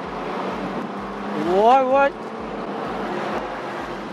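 Steady road and engine noise inside the cabin of a Toyota Land Cruiser Prado 120 with its 4.0-litre six-cylinder petrol engine, driving along a street. A voice rises in pitch briefly about a second and a half in.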